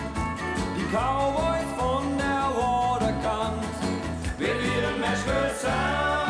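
Country band playing an instrumental passage on pedal steel guitar and electric guitar over bass and drums, with notes sliding up in pitch about a second in and again near the end.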